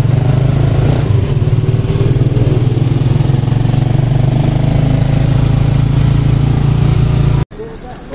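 Motorcycle engine of a passenger tricycle running steadily at cruising speed, heard from inside the sidecar, with a loud, even drone; it cuts off abruptly near the end.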